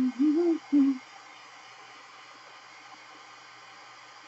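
A woman humming a few short, sliding notes to herself, which stop about a second in; after that only quiet room tone.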